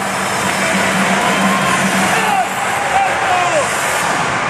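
Loud cheerleading routine music mix playing over the hall's speakers under a noisy din of shouting voices, with several short falling whoop-like calls in the second half.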